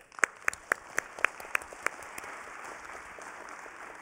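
Audience applause, with one person's hand claps close to the microphone standing out sharply at about four a second for the first two seconds; the applause dies away near the end.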